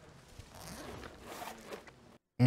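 Faint rustling and scraping from a TV drama's soundtrack, a few soft noisy strokes with no clear speech.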